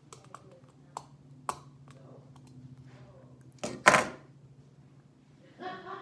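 Plastic Lego bricks being handled and pried apart: a few sharp clicks in the first two seconds, then a short, louder burst of noise about four seconds in, over a steady low hum. A voice starts near the end.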